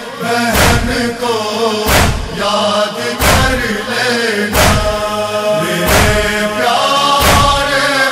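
An Urdu noha (Muharram mourning lament) sung in long, drawn-out wordless notes between verses, over a heavy thump about every 1.3 seconds that keeps time.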